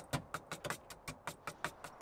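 A screwdriver stirring paint in a metal tin, its blade knocking against the inside of the tin in quick, irregular clicks, about six a second.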